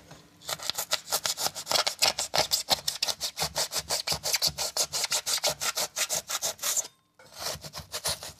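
A metal filling knife sawing through dried polyurethane expanding foam to cut away the excess, in rapid back-and-forth rasping strokes, about five a second. The strokes stop abruptly about seven seconds in, then resume briefly.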